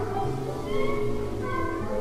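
Avant-garde concerto music for alto saxophone and orchestra: sustained low string tones under short, gliding higher notes.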